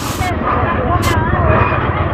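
People talking in the background over a steady low rumble, with two short hissing bursts about a second apart.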